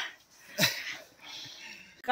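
A woman's short breathy laugh with a falling pitch about half a second in, then faint breathing.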